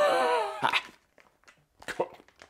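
A man's wordless, breathy groan that falls in pitch over about half a second, a recoiling reaction to how potent the scented soft-plastic craw bait is. A few faint clicks from handling the packaging follow near the end.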